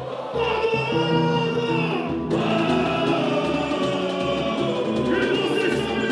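A samba-enredo sung live by many voices together over a samba percussion beat, with low drum hits about twice a second; the singing comes in strongly about half a second in.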